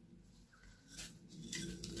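Faint patter of toasted sesame seeds poured from a small glass bowl onto soft dough, with a few light taps in the second second.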